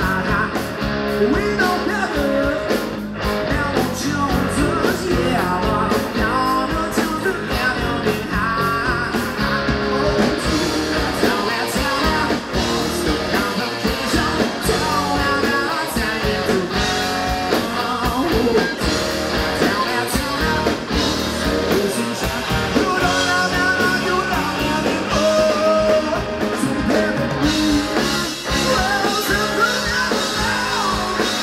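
Live rock band playing loud: electric guitars, bass and drum kit, with a woman singing over them.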